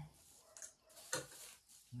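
Small handling noises at a dining table: forks and plates, foil and plastic packaging being moved, with a sharp tap about a second in.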